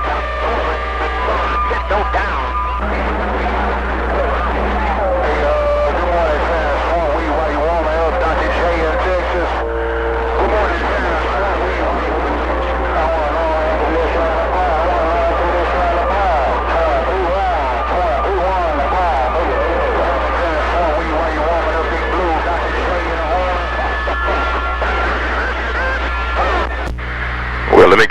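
CB radio receiver playing a jumble of garbled, overlapping voices from several distant stations talking over one another, with steady whistling tones in the first couple of seconds and a constant low hum underneath.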